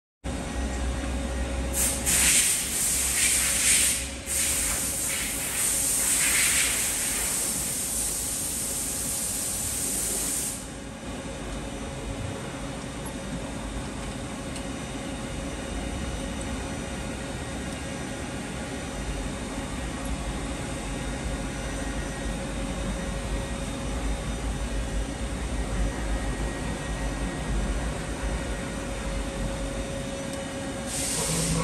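Fadal VMC-15 vertical machining center powered up and running with a steady hum and a faint steady whine. A loud hiss that rises and falls covers it from about two seconds in until about ten seconds in.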